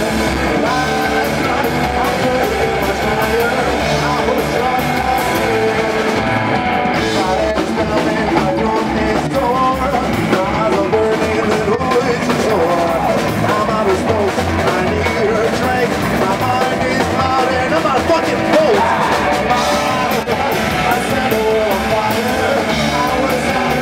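A rock band playing live: an upright double bass, drums with cymbals, and a sung vocal line, loud and steady throughout.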